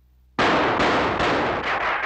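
Cartoon sound effect of rifle fire: a sudden, loud, rapid volley of shots bursts in about half a second in and keeps going.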